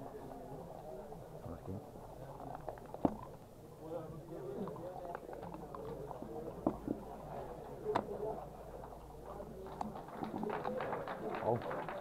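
Murmur of background voices, with a few sharp clacks of backgammon dice and checkers on the board and a run of quick clicks near the end as checkers are moved.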